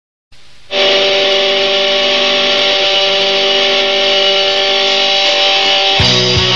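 A punk rock track cuts off into a moment of silence. Then, just under a second in, a loud distorted electric guitar chord starts and is held, ringing steadily on the same notes, as the intro of the next song.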